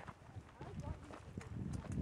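Footsteps on a rocky dirt trail, with a few short knocks in the second half, under faint voices.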